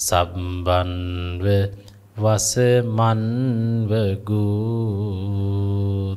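A Buddhist monk chanting a Pali verse solo in a slow, melodic recitation. He holds long notes whose pitch wavers, in several phrases with short breaks between them.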